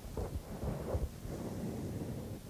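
Low, uneven rumbling and rustling from a clip-on microphone rubbing against a shirt.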